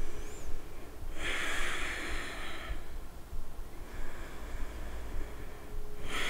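A woman breathing deeply through a clip-on microphone while holding a yoga squat. There is one strong breath about a second in, lasting about a second and a half, then a softer, longer breath from about four seconds in.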